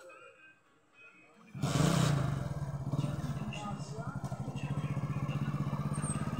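Motorcycle engine starting about a second and a half in, loudest just after it catches, then running steadily with a rapid, even putter.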